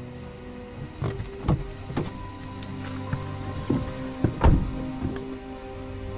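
A sustained eerie film score, with a series of sharp knocks and thumps on a car. Three come about half a second apart near the start, then a few more, the loudest about four and a half seconds in.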